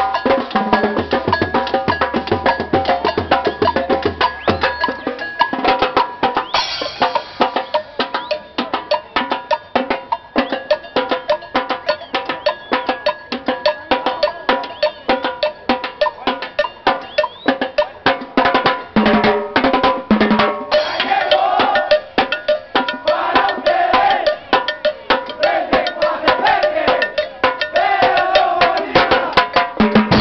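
Marching band playing: a fast, dense drum rhythm with bass and snare drums under brass, the melody wavering in pitch in the second half.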